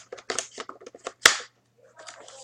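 Plastic clicks and knocks from hands working the handguard of a King Arms CAA M4 airsoft rifle, with one louder snap about a second in, then a brief quiet spell.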